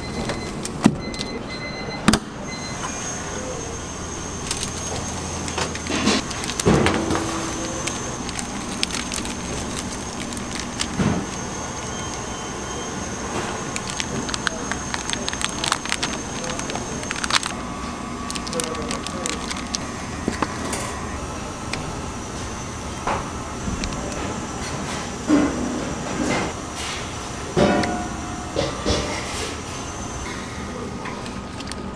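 Background music with voices over kitchen handling noise: a plastic spatula scraping thick custard cream off plastic wrap, and clicks and knocks of a metal sheet pan and a steel mixing bowl, a few of them louder. A faint steady high whine runs through the first half.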